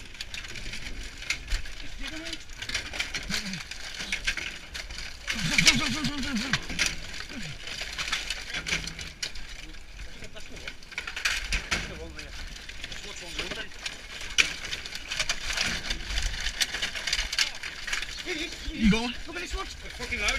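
Scrap strips and crushed drink cans rattling and crackling irregularly as terriers dig and hands pull the debris aside, with a few short calls.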